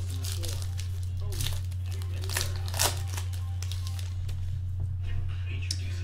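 Trading card pack wrapper being torn open and crinkled by hand, with a few sharp crackles about one and a half, two and a half and three seconds in, over a steady low hum.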